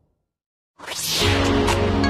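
Edited soundtrack: a short silent gap, then a rising whoosh transition effect just under a second in, leading straight into background music with steady bass notes and percussion hits.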